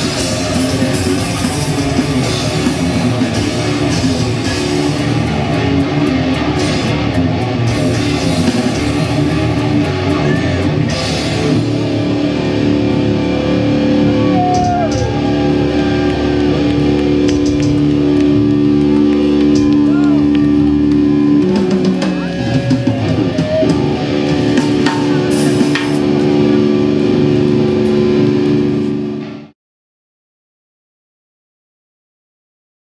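Death metal band playing live: distorted electric guitars and a drum kit, with long held notes in the second half. The music cuts off suddenly just before the end.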